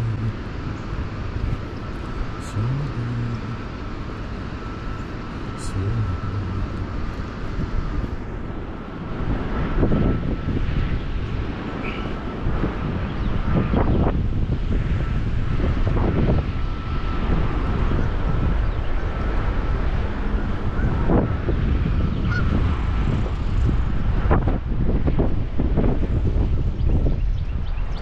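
Wind buffeting the microphone of a camera carried on a walk: a low rumble that grows louder after about nine seconds, with a faint steady high whine behind it.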